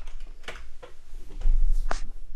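A few scattered computer-keyboard clicks, with a low rumble swelling up in the second half that is the loudest sound.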